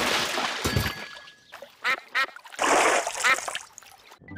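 Cartoon splash of a body landing in a duck pond, fading over the first second, then ducks quacking: two short quacks about two seconds in and more splashing and quacking around three seconds.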